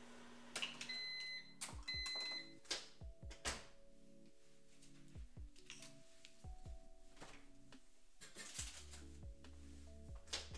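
Microwave oven beeping twice, about a second apart, among clicks and knocks of kitchen utensils being handled and set down on a counter. A low hum starts near the end.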